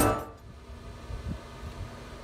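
The tail of an intro music track dying away in the first moment, then a low, uneven background rumble.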